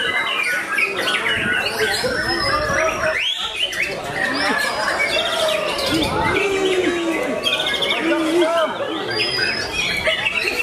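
Dense, continuous song of several caged songbirds at once, a white-rumped shama (murai batu) among them: many overlapping whistles, chirps and trills with no pauses.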